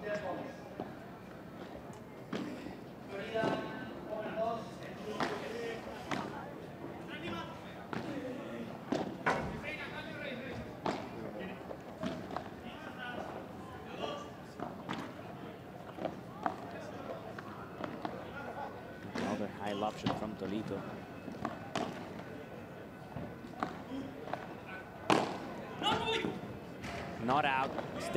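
Padel ball struck by rackets and bouncing on the court, a series of sharp knocks at irregular intervals, the loudest near the end, with faint voices in the background.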